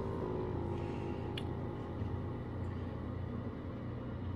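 Steady low background hum, with one faint click about a second and a half in.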